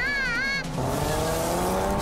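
Race-car engine sound effect revving up, its pitch climbing steadily over a rushing noise, starting about half a second in just as a wavering high tone cuts off.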